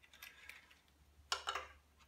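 Faint light clicks, then a short rattle about one and a half seconds in, from a stepped attenuator's metal mounting bracket and wires being handled and fitted into an amplifier chassis.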